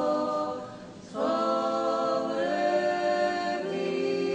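Unaccompanied Orthodox church choir singing liturgical chant in held, sustained chords. One phrase dies away and, after a brief breath about a second in, the next begins. The chord shifts twice after that.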